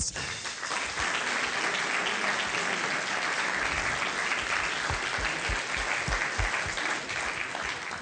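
Audience applauding steadily, the clapping easing a little near the end.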